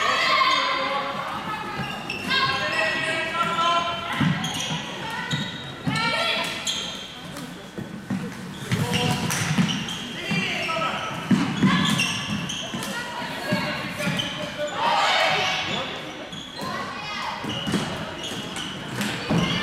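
Floorball match sounds in a large sports hall: players' voices calling out, echoing, over repeated sharp clacks of sticks on the plastic ball.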